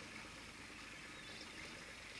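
Faint, steady wash of sea water around a small boat, with no distinct events.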